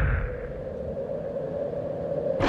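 Edited-in title sound effect: the tail of a whoosh fades out in the first moments, leaving a steady low drone over a rumble.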